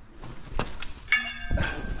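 A freshly bent metal tube knocks once, then rings briefly with a clear metallic tone as it is handled and lifted off the floor.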